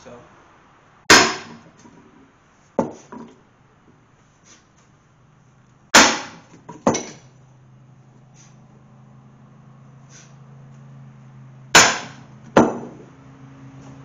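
Sledgehammer striking, with the side of its head, a steel truck axle tube set on a corroded, seized piston in a Mopar 400 engine block, to drive the piston down the cylinder. Three heavy metallic blows about five seconds apart, each followed by a lighter knock under a second later.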